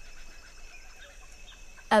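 Faint forest ambience with soft, scattered chirps over a steady low background hiss.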